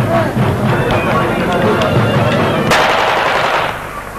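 A rapid series of sharp bangs, with a denser, louder burst about three seconds in that lasts about a second, over voices.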